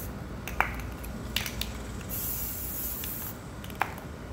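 Aerosol spray paint can hissing in one burst of about a second, starting around two seconds in, as paint is sprayed onto water in a bucket. A few sharp clicks come around it.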